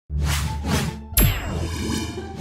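Cartoon logo sound effects: two quick swishes over a low steady tone, then, about a second in, a sharp metallic clang whose bright ding rings on.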